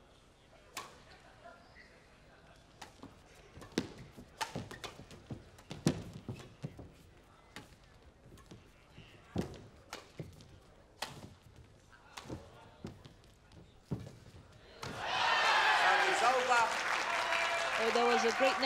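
Badminton rally: sharp racket strikes on the shuttlecock and footfalls on the court, spaced about a second apart. About fifteen seconds in, the rally ends and a loud crowd breaks into cheering and applause.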